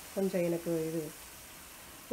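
Rice-flour murukku deep-frying in hot oil, a steady sizzle, under a voice speaking for about the first second.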